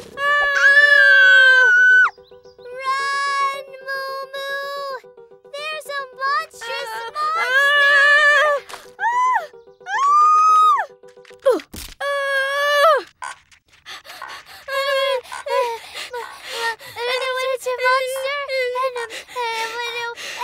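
Cartoon characters crying out in long, high, sliding wails and screams over background music. A steady held note runs under the first half, and the cries turn into quicker wavering whimpers near the end.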